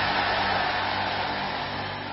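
Congregation praying aloud together, heard as a dense wash of voices, over a steady sustained keyboard chord. The level eases down gradually.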